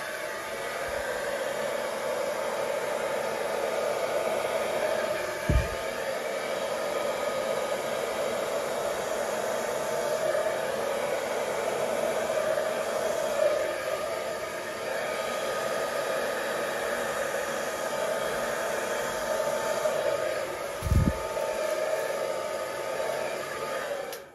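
Handheld hair dryer running steadily, blowing wet acrylic paint outward across a canvas, with a faint steady motor whine in its rushing air. Two brief low thumps come about five seconds in and near the end, and the dryer cuts off right at the close.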